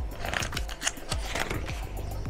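Glossy catalog pages being turned, with two short paper rustles about half a second in and again at about a second and a half. Background music with a steady electronic beat plays underneath.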